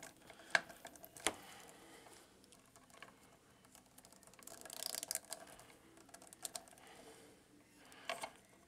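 Small clicks and taps of fingers handling a plastic action figure's head as its face and hair pieces are pressed into place. There are two sharp clicks in the first second and a half and a short rustle around the middle.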